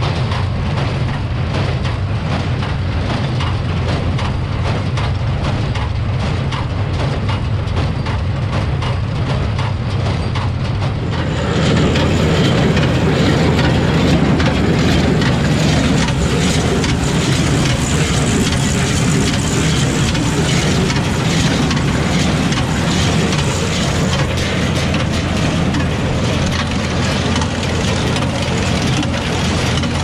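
New Holland small square baler running while it picks up and bales a windrow of hay, its pickup and drive clattering continuously over the steady drone of the Ford tractor pulling it. About a third of the way in the clatter grows fuller and louder.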